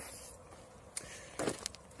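Quiet pause with low background hiss. A single sharp click comes about a second in, and a short breath-like rush with a couple of soft clicks follows about half a second later.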